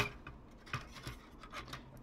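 Faint clicks and rubbing of hands handling a plastic toy trailer model, with a slightly louder click about three quarters of a second in.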